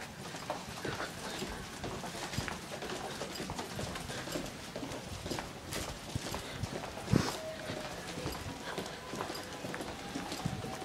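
Footsteps of several people walking briskly on a hard, polished hallway floor, irregular and overlapping, with one louder knock about seven seconds in.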